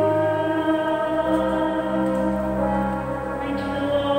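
Church choir singing slow, long held notes, the pitch moving to a new note every second or so.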